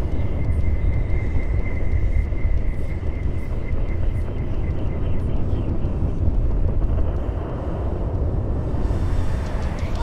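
Skydiving freefall wind rushing hard over the microphone, a heavy, steady low rush with no letup. A faint thin high whine under it fades away by about halfway through.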